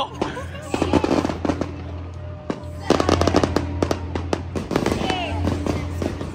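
Fireworks going off in quick, crackling volleys of sharp bangs, thickest from about one to four seconds in.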